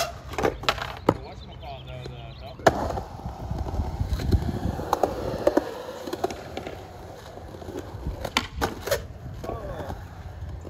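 Skateboard wheels rolling over concrete with a steady low rumble, broken by several sharp clacks of the board's tail popping and the deck slapping down.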